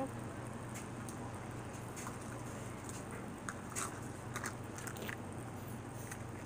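Someone chewing ice, a few scattered crunches and clicks over a steady low hum.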